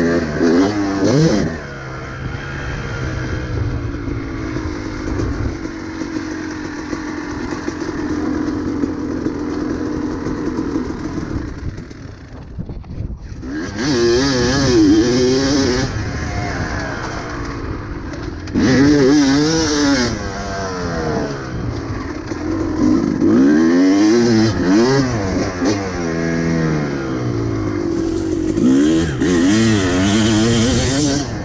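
Kawasaki KX250 single-cylinder two-stroke dirt bike engine being ridden hard, its pitch climbing and falling repeatedly as the throttle is opened and shut through the gears. About halfway through it falls back almost to idle, then comes back in several sharp bursts of throttle.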